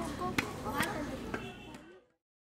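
Boys' voices with about four sharp knocks over them, the whole fading out to silence near the end.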